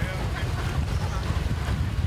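Wind buffeting the camera microphone: a steady, uneven low rumble.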